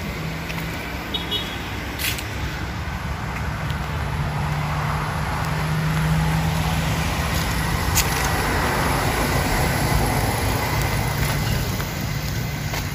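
A motor vehicle engine hums steadily, swelling louder over the first half and then holding, with a couple of sharp clicks.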